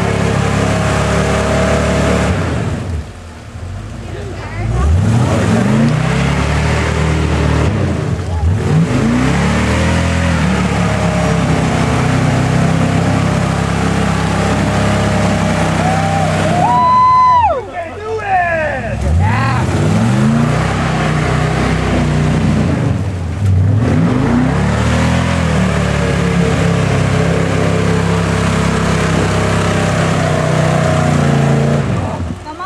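Off-road Jeep's engine revved hard again and again as it churns through deep mud, the revs climbing and falling several times. The throttle drops off briefly about three seconds in and again just past the halfway point, then picks back up.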